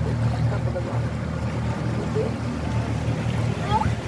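A boat's motor running steadily at low speed, a continuous low drone.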